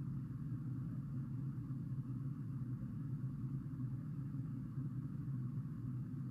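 Steady low hum with a faint even hiss and no distinct events: background noise of the recording.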